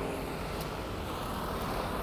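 Steady city street background noise with a low hum of road traffic.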